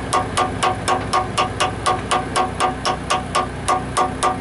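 A hand hammer tapping a steel bushing housing on a logging grapple's snubber assembly in a steady rhythm of about four taps a second, each tap ringing briefly. A steady low hum runs underneath.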